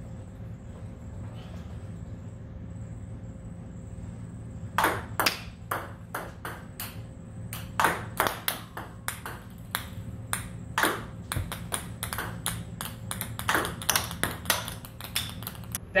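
Table tennis serves: a plastic ball struck by the racket and bouncing on the table, heard as quick clusters of sharp clicks repeated over several serves. The clicks begin about five seconds in, after a quiet stretch with a low hum.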